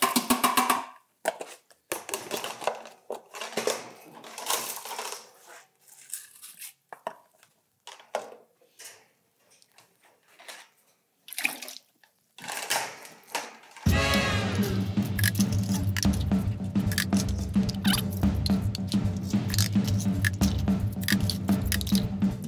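Pigeon loft bowls being emptied, knocked and stacked, in irregular clatters and scrapes with short pauses. About fourteen seconds in, background music with a steady beat starts suddenly and plays on over the rest.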